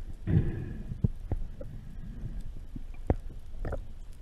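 Muffled underwater noise through a camera housing: a low rumble with several sharp knocks and bumps from handling a speared amberjack close to the camera.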